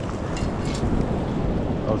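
Shallow surf washing in over the sand, with strong wind buffeting the microphone.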